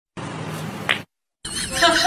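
Faint room noise with one short rising squeak, a brief dead-silent break, then a cat's high, repeated calls starting about one and a half seconds in.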